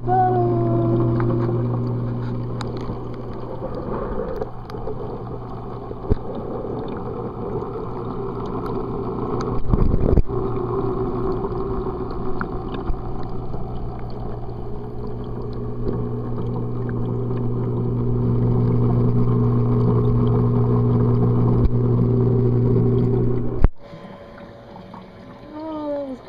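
Steady low hum of aquarium pump equipment heard under water, with a muffled water wash and a bump about ten seconds in. The hum cuts off sharply near the end as the microphone comes out of the water.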